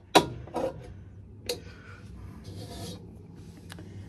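A crowbar being worked in behind a metal part: a sharp clank just after the start, then a few lighter knocks and a short scrape of metal rubbing on metal.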